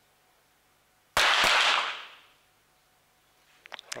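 .22 sport pistol shot about a second in, with a second sharp report about a third of a second later, both ringing out briefly in the range hall. A few faint clicks follow near the end.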